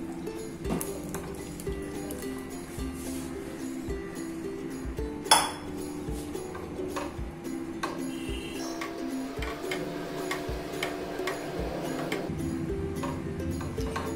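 Background music with the clinks and taps of a spatula stirring in a frying pan as paneer cubes are folded into gravy. One sharp clink about five seconds in is the loudest sound.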